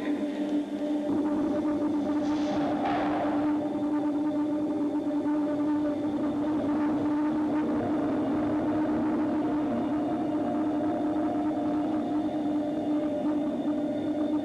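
Live experimental electronic drone: a sustained low hum with a few steady higher overtones over a noisy haze. A brief hissing swell rises and fades about three seconds in.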